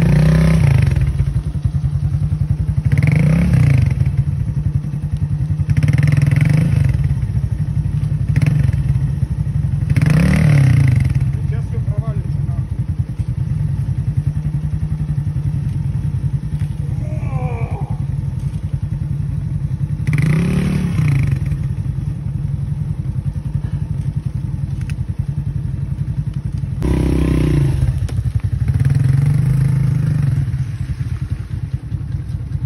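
Small Chinese moped engine running steadily and revved in short bursts about six times, with the throttle blipped as the bike is worked over fallen logs.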